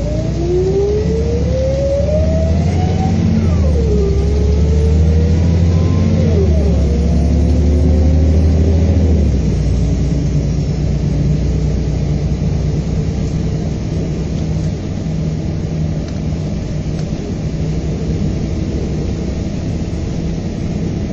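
Volvo B7R coach's six-cylinder diesel engine accelerating through the gears, heard from inside the coach. The pitch rises, drops at a gear change about three and a half seconds in, rises again with another change near six and a half seconds, then settles into steady cruising with road noise after about nine and a half seconds.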